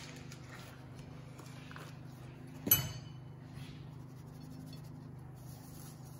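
Powdered sugar being sifted through a sieve: a few faint light taps and one short, sharper knock about three seconds in, over a steady low hum.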